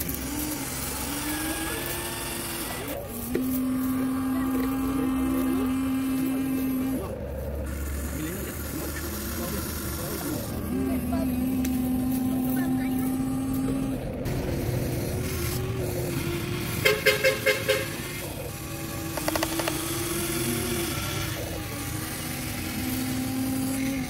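Huina 1593 RC excavator's small electric motors and gearboxes whining in steady stretches of a few seconds as the cab slews and the arm and bucket move, with a short, loud rapid rattle about two-thirds of the way through.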